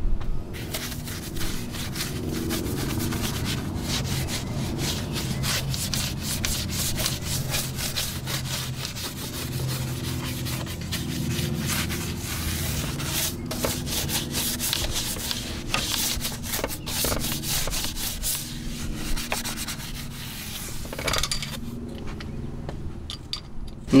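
A Work Stuff detailing brush scrubbing caked-on mud off a truck's door jamb with many quick scrubbing strokes.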